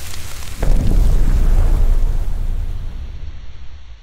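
Cinematic logo-reveal sound effect: a swell of noise, then a deep boom about half a second in whose rumble slowly fades away.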